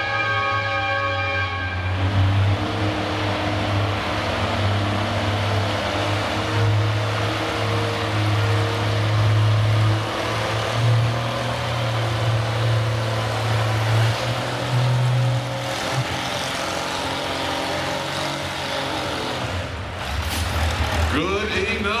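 Farmall 560's six-cylinder engine working hard under load as it pulls a weight-transfer sled, its pitch rising and falling for about fourteen seconds. It eases off about sixteen seconds in, when the pull ends.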